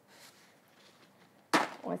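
A sheet of paper towel pulled off a roll: faint rustling, then a sudden short tear about one and a half seconds in.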